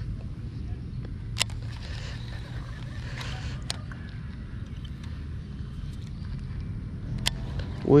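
Shimano SLX MGL baitcasting reel being cast and retrieved: three short, sharp clicks spread over several seconds above a steady low outdoor rumble.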